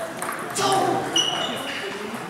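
A table tennis ball being hit, a sharp click about half a second in, followed by a short high-pitched squeak lasting about half a second.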